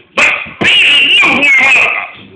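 A man shouting into a microphone through an overdriven church PA. There is a short yell, then a long strained cry whose pitch wavers, loud and distorted.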